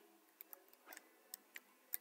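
Faint keystrokes on a computer keyboard: about half a dozen scattered, separate taps as a word is typed.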